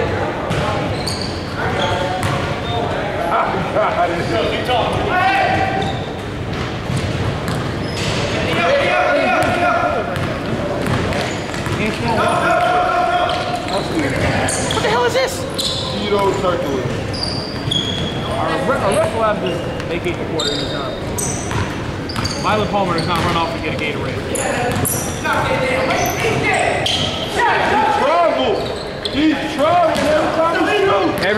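Basketball bouncing on a hardwood gym floor during play, with short high-pitched sneaker squeaks and indistinct voices of players and onlookers echoing in a large hall.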